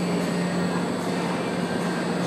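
Steady background noise: an even hiss with a constant low hum and no distinct hoofbeats or voices.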